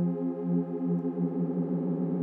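Serum software-synth pad holding a chord while its unison detune rises, so the stacked voices beat faster and faster and drift out of tune: a tension pad for building into a break.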